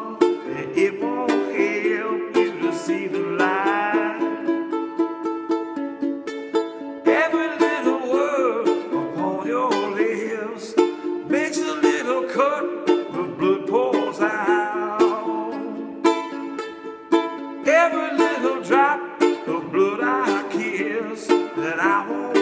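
Kala concert ukulele strummed in a steady rhythm, with a man singing along over it.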